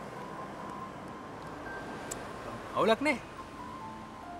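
Soft background music of quiet held notes. About three-quarters of the way through comes a short, louder two-syllable voice utterance.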